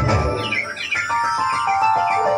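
Dance song music. About half a second in, the beat drops out, leaving a passage of quick falling chirps over held high notes.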